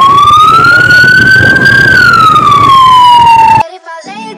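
Police motorcycle siren wailing very loud and close, its pitch sliding up for about two seconds and then back down, over a low engine rumble. It cuts off suddenly near the end.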